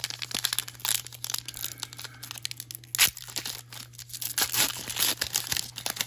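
Trading-card packaging crinkling and tearing as it is handled and ripped open, with dense irregular crackles and one sharp loud crack about three seconds in.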